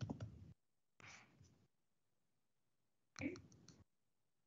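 Three short, faint bursts of clicking and muffled sound from an open video-call microphone, each about half a second long, cut to dead silence in between.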